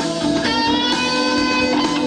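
Live rock band playing with guitars to the fore, loud and steady; a new chord of held notes comes in about half a second in.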